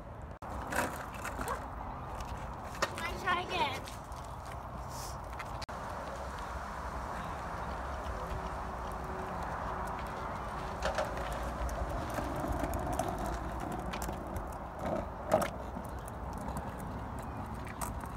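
Skateboard wheels rolling slowly on a rough asphalt path, a steady rumble with a few sharp clacks.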